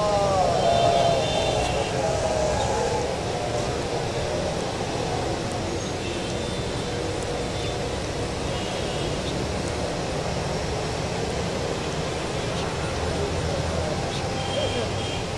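Steady low rumbling background noise, with a drawn-out voice gliding downward and fading out over the first two or three seconds.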